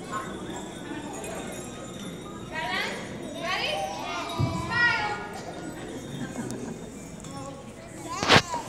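Several young children's voices, high-pitched, rise out of a steady room murmur from about two and a half to five seconds in.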